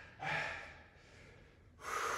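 A man breathing hard during Russian twists: a sharp, forceful exhale about a quarter second in, fading out, then another breath starting near the end.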